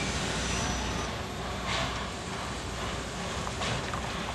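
Steam locomotive N&W 611 standing with a steady low rumble and hiss, with two brief louder swells of noise, about 1.7 seconds in and near the end.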